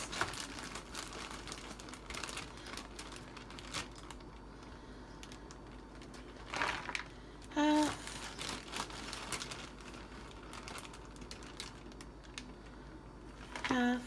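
Shredded salad greens (cabbage, kale and carrot) rustling and crinkling as they are scooped with a half-cup measure and dropped into a black plastic meal-prep container, in irregular crinkles and light taps, a little louder about two-thirds of the way through.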